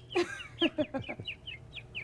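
A person imitating a bird call with their own voice: a quick run of short, high, falling chirps, about six a second.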